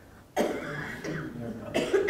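A cough about a third of a second in, followed by faint, indistinct voices and a second short sound near the end.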